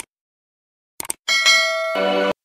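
Sound effects of a subscribe-button animation: a click at the very start, two quick clicks about a second in, then a bright bell chime ringing.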